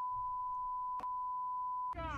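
A steady, single-pitched censor bleep, a pure beep tone laid over the clip's audio to cover swearing, holding for nearly two seconds with a brief click about a second in.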